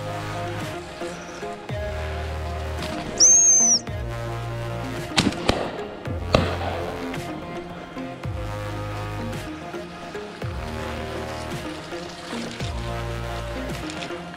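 Background music with a steady beat. About three seconds in, a short, shrill single whistle blast cuts through, of the kind made by a gundog training whistle. A few sharp cracks follow a couple of seconds later.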